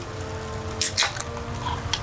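A Busch NA beer can being opened by its pull tab, with a short crack and hiss about a second in.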